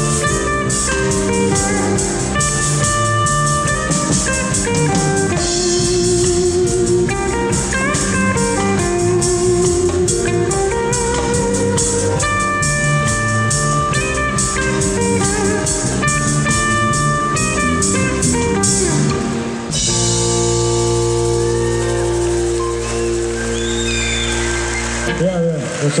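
Live band playing an instrumental passage with electric guitars, drums and keyboard. About twenty seconds in, the song ends on a long held chord that cuts off shortly before the end.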